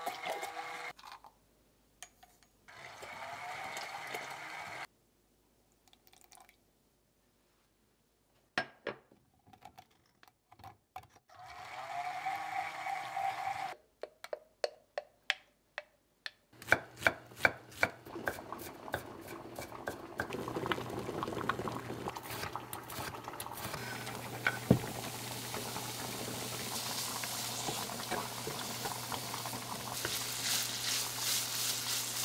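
A stick (immersion) blender motor runs in short bursts in a glass beaker of egg yolks and oil, emulsifying mayonnaise. A knife then chops quickly on a wooden cutting board, and chopped bacon starts to sizzle in a cast-iron skillet through the last third.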